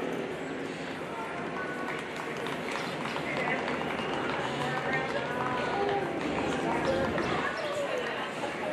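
Indistinct chatter of voices around the ring, with the dull, repeated hoofbeats of a horse cantering on sand footing.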